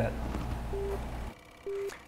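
Two short electronic beeps on one steady pitch, about a second apart, over a faint low hum that cuts off abruptly between them.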